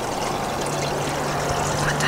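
Steady trickle of running water, with a low steady hum joining about a quarter second in.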